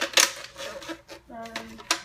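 Hard plastic clicks and rattling from a Nerf Retaliator blaster as its shoulder stock is fitted on; a loud sharp click comes just after the start and another near the end.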